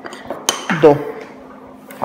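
Metal spoon clinking against a ceramic dish while scooping soft arepa dough: one sharp clink about half a second in and another near the end.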